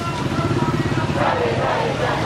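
Motorcycle engine running close by, a steady rapid putter, with people's voices shouting over it from about a second in.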